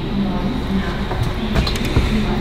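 Steady low hum of a regional train carriage interior, with background voices and a few sharp clicks and a knock near the end.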